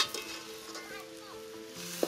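Shredded cabbage sizzling in a hot wok as it is stirred with a metal spatula, with a sharp clack right at the start. Soft background music with held notes underneath.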